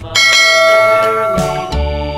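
A bright bell chime sound effect that strikes just after the start and rings out, fading over about a second, over background music.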